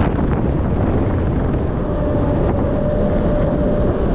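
Loud rushing wind buffeting a chest-mounted action camera's microphone as a Booster thrill ride swings the rider through the air. A faint steady hum joins in about halfway through.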